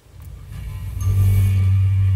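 A movie trailer's soundtrack played through a television's speakers: a deep, steady low rumble that swells over the first second as the TV volume is turned up, then holds loud.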